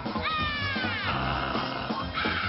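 Rock song with a bass and drum groove and a loud wailing note that slides down in pitch over about a second, one of several such falling cries.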